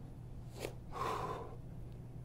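A man breathing hard while he holds a kneeling push-up position: a short, quick intake of breath about half a second in, then a breathy exhale about a second in.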